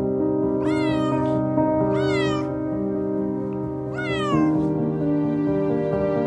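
A kitten meowing three times, each high call about half a second long and bending up then down in pitch, over slow background music.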